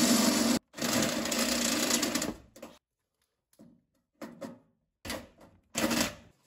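Cordless drill with a step drill bit boring up through a sheet-metal wire trough, the motor running steadily. The drill pauses briefly just after the start, runs again and stops a little over two seconds in; a few short, quieter sounds follow.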